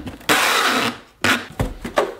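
Packing tape pulled off a handheld tape gun across a cardboard box: one loud tearing rip lasting a little under a second, followed by a few short knocks as the box is handled.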